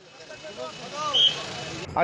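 Many voices of a crowd shouting over the rising noise of a passing vehicle, with a brief high-pitched tone about a second in; the sound cuts off abruptly near the end.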